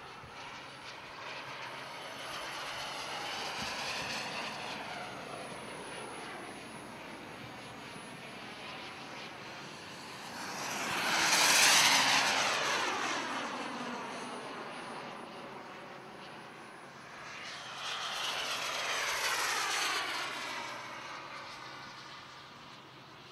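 Radio-controlled model Lockheed T-33 jet with a gas turbine engine making three fly-bys. Its turbine whine and rush swell up and fall away with the pitch dropping as it passes each time. The loudest pass comes about halfway through, with weaker ones near the start and near the end.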